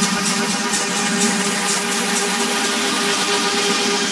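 Tech house music in a stretch with no bass or kick: sustained synth chords over hi-hat ticks about four a second that fade out around halfway, then a rising high sweep near the end.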